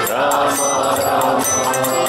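Kirtan: voices chanting a mantra to a held melody over harmonium and violin, with small hand cymbals jingling above.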